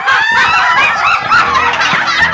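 A woman shrieking and squealing with delight, high-pitched and wavering up and down in pitch, with more than one shrill voice overlapping.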